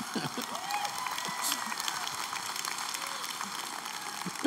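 Audience applauding and laughing, a steady patter of clapping with scattered voices.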